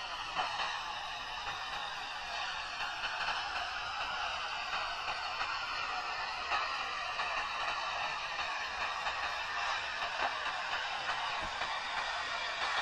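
Steady sizzling hiss of a burning fuse, a sound effect, with a few faint crackles.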